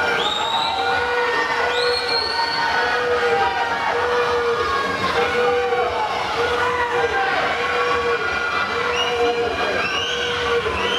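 Spectators cheering a freestyle swim race in an echoing indoor pool hall. A horn toots in short repeated blasts, about one and a half a second, and shrill whistles rise in pitch near the start.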